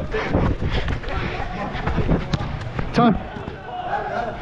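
Indoor five-a-side soccer on artificial turf: a run of thuds from running footfalls and ball contacts, with a laugh at the start and a shout about three seconds in.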